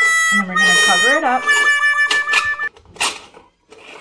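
Aluminium threads of a stovetop moka pot squealing as the top chamber is screwed tight onto the base: a high, steady squeal that drops slightly in pitch about a second in and stops a little past halfway, followed by a single click.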